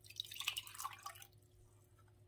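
Water poured from a silicone cup into a ceramic mug, splashing and trickling for just over a second before it stops.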